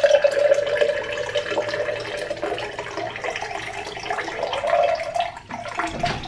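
Water poured in a steady stream from a stainless steel pitcher into a glass mug with ice cubes in it, the pitch of the filling rising slightly as the glass fills. The pour breaks off briefly about five and a half seconds in.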